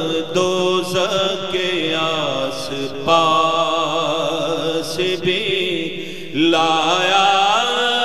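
A man's voice singing an unaccompanied Urdu naat, drawing out the words in long, wavering melismatic phrases over a steady low hum, with a new phrase starting about three seconds in and again after a brief dip past six seconds.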